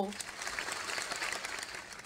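An audience clapping, a dense patter of many hands that fades out near the end.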